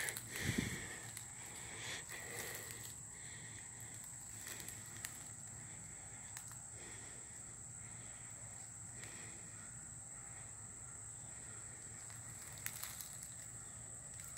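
Footsteps rustling through dry leaf litter for the first couple of seconds, then quiet woods with a faint steady high insect drone and a few small rustles near the end.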